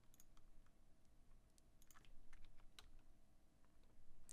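Faint keystrokes on a computer keyboard, a few scattered clicks.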